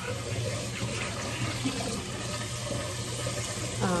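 Kitchen tap running steadily into the sink, over a low steady hum.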